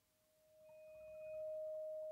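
A bowed Saito vibraphone bar sounding one pure, steady tone. The tone swells in from nothing and reaches full strength about a second and a half in, then rings on.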